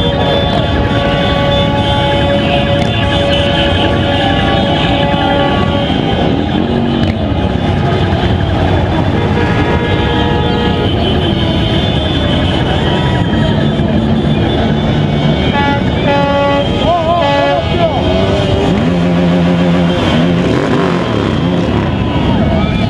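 Many motorcycle engines running in a slow procession amid a shouting crowd, with long held horn blasts and tooting over the din.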